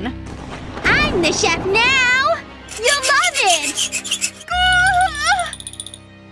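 A woman screaming, then wailing in exaggerated sobbing cries with a wavering pitch, over background music. A rasping rub is heard in the first second.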